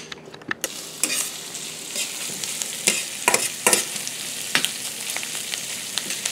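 Sliced onion, bell pepper and garlic sizzling steadily in margarine in a stainless steel skillet, sautéing until soft. A slotted spatula scrapes and knocks against the pan now and then as the vegetables are stirred; the sizzle sets in about half a second in.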